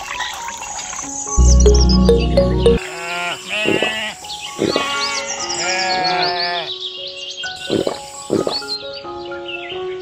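Sheep bleating, two long calls a few seconds in and a couple of shorter ones later, over background music. A loud, deep low sound plays for about a second just before the first bleat.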